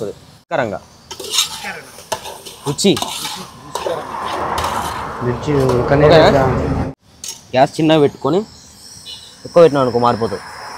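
A long steel ladle clinking and scraping against an aluminium cooking pot as chopped ridge gourd is stirred, with scattered clicks and knocks of metal on metal. A longer stretch of stirring noise comes in the middle, and short bits of a man's voice come near the start and near the end.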